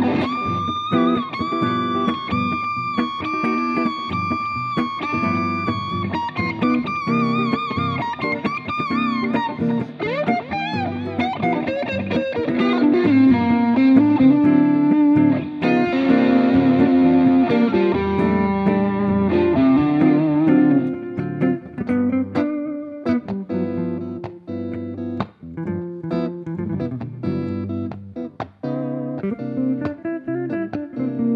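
Electric guitar playing a solo lead line. It opens with long sustained notes held with wide vibrato, then moves into faster runs, and turns to quicker, choppier phrases in the last third.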